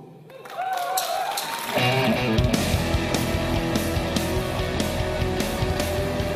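Live neo-prog rock band starting a song: a lone wavering melody line opens it, and about two seconds in the full band comes in with bass and drums keeping a steady beat.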